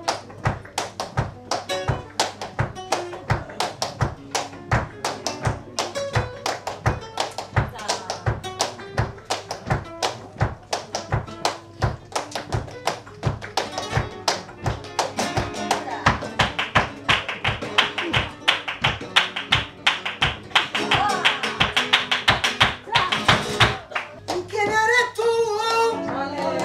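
Flamenco guitar strummed and picked under palmas, hand clapping in a fast, steady beat. About two-thirds of the way through the playing and clapping grow louder and denser.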